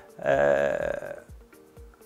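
A man's single drawn-out hesitation sound, like "euhhh", lasting about a second, then a brief pause.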